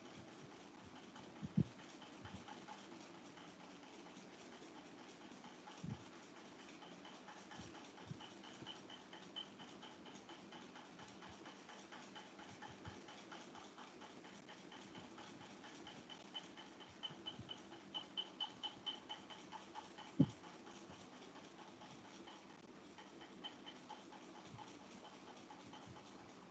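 Quiet background room tone with a few soft knocks, the loudest about a second and a half in and about twenty seconds in. Through the middle a faint, high-pitched chirping repeats several times a second, strongest shortly before the second knock.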